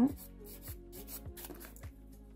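Soft rasping strokes of a fine-grit nail file passed very lightly over a fingernail to take off the last traces of gel, heard faintly under quiet background music with a steady beat.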